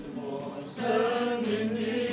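A men's choir singing, holding long steady notes together; the singing swells louder about three-quarters of a second in.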